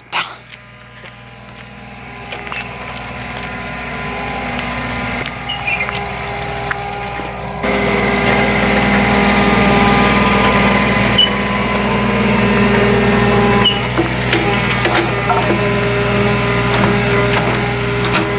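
Kubota mini excavator's diesel engine running while it travels on its tracks, with a steady drone that grows louder as the machine comes closer. The sound steps up suddenly about halfway through and then holds steady.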